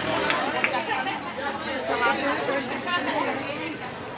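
Indistinct talking from several people at once, no words clear.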